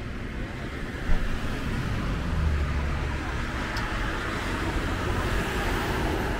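Steady road traffic noise, with a low vehicle rumble swelling about two seconds in and fading a second or so later.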